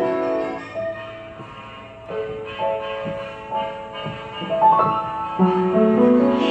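Piano played solo, a slow passage of held notes and chords. It thins out and softens about a second in, then builds back with fuller chords toward the end.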